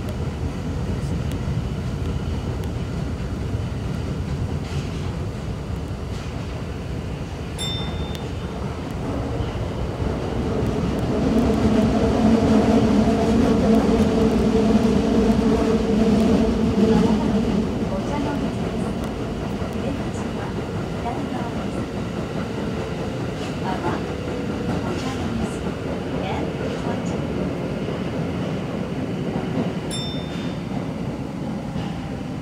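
Tokyo Metro 2000 series subway train running through a tunnel, a steady rumble of wheels on rail. A louder, steady hum joins from about eleven to seventeen seconds in, and a brief high tone sounds about eight seconds in.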